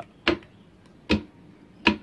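Three sharp clicks as a three-phase motor-reversing control box is switched on and off from a wireless remote: its magnetic contactors pulling in and dropping out.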